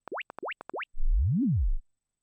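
Several quick rising chirps, each sweeping up to a high pitch in a fraction of a second, followed about a second in by a louder low tone that glides up and back down. These are Sound ID Reference (Sonarworks) calibration test sweeps played through an Eve Audio SC207 studio monitor to measure the speaker and the room for correction EQ.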